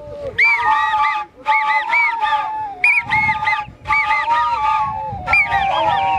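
An ensemble of long cane flutes playing together in short phrases of about a second each, with brief breaks between them, repeated about five times. Several flutes sound at once, slightly apart in pitch, their shrill notes swooping up and falling back.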